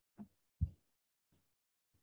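Chalk writing on a blackboard: a few short, separate taps and strokes, the loudest a dull knock just over half a second in.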